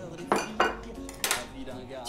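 Chopsticks clinking against porcelain rice bowls as people eat: three sharp clinks in the first second and a half.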